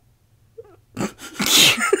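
Almost quiet for about a second, then a woman's sudden, loud, breathy outburst that runs into laughter at the end.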